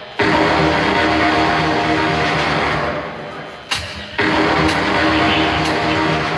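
Loud live industrial rock band playing, with held guitar or synth notes over drums. The band comes in sharply just after the start, drops out briefly in the middle with a single sharp hit, then kicks back in with more cymbal hits.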